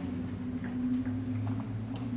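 Steady low electrical hum of the meeting room, with a few faint ticks and rustles.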